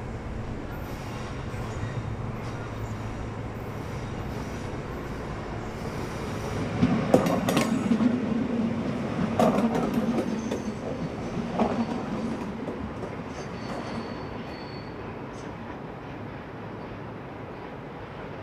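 Electric passenger train rolling through station pointwork: a steady rolling rumble with loud bursts of wheel clatter over the switches and crossings about seven, nine and a half and eleven and a half seconds in. A brief thin wheel squeal follows a little later, and the train fades away near the end.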